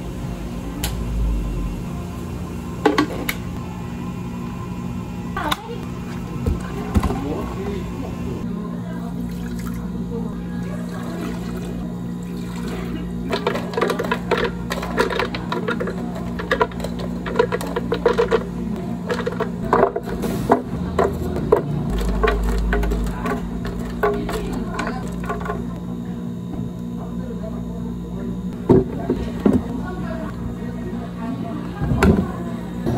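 Drink-making work sounds: a thick shake sliding out of a blender jar into a plastic cup, then liquid poured into plastic blender jars, with many small knocks and clunks of the jars and utensils over a steady low hum.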